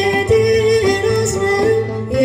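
A woman singing an Ethiopian Orthodox hymn (mezmur) into a microphone, holding long, slightly wavering notes over steady instrumental accompaniment.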